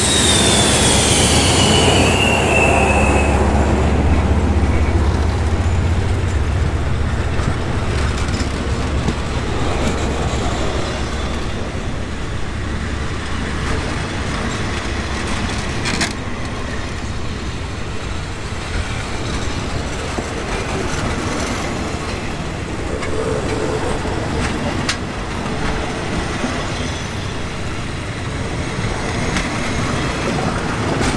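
Hitachi diesel-electric locomotive passing, its engine humming low, with a squeal falling in pitch over the first three seconds. The engine sound fades after about ten seconds, leaving passenger coaches rolling past on the rails with a few sharp wheel clicks as the train arrives.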